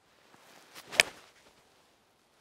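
A golf tee shot: the swish of the club swinging through, then a sharp click as the clubface strikes the ball about a second in.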